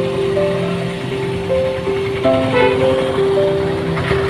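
Background music of slow, held notes changing in steps, over the noise of road traffic.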